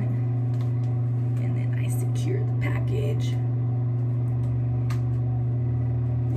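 A steady low hum runs unbroken, with faint rustling and a few soft clicks between about one and three and a half seconds in, and one more click near five seconds, as hair is twisted by hand into a bun.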